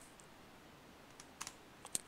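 A few faint, short clicks from a computer in the second half, over low room hiss.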